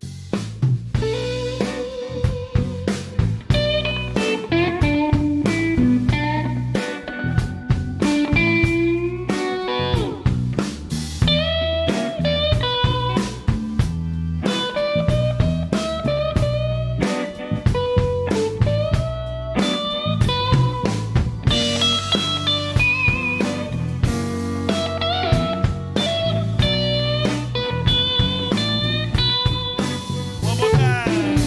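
Live electric blues band playing an instrumental passage: lead electric guitar playing sustained notes that bend in pitch, over electric bass, drum kit and keyboard. The whole band comes in together suddenly at the start.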